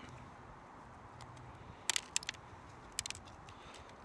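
Knife cutting into a fresh yellow Primo pepper, giving a few faint crisp clicks and crackles of splitting flesh: a cluster about two seconds in and a couple more about a second later.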